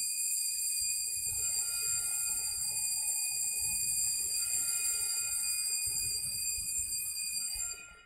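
Altar bells ringing continuously in a steady high jingle, marking the elevation of the chalice at the consecration; the ringing stops suddenly near the end.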